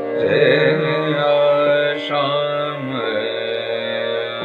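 Male Hindustani classical voice singing a slow, gliding vilambit khayal phrase in Raag Bihag over a steady drone. The phrase fades out about three seconds in, leaving the drone.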